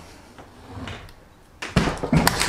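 Hand-lever bench shear (guillotine) cutting a 1 mm mild steel sheet: a few faint handling sounds, then a sudden loud metallic clunk near the end as the blade comes down through the steel.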